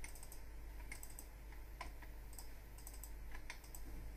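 Faint computer keyboard typing: short clicks of keystrokes in small irregular clusters, over a steady low hum.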